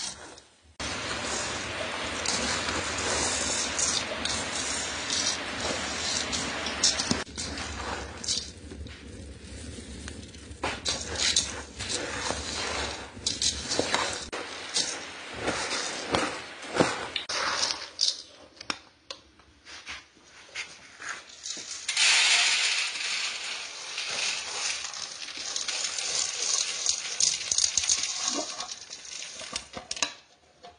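Coffee beans being stirred and scraped with a metal utensil in an aluminium pot as they roast, a rattling, scraping noise with many sharp clicks. A brighter, steady hiss takes over for several seconds near the end.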